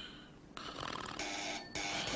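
A man snoring in his sleep, several noisy breaths one after another.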